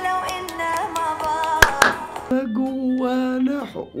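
A song playing back, a singing voice over instrumental backing with a beat. In the second half the voice holds one long note.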